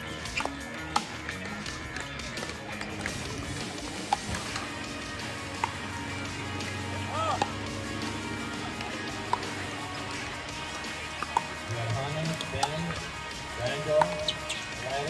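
Pickleball paddles hitting a hard plastic pickleball: about half a dozen sharp pops at irregular intervals, a second or more apart.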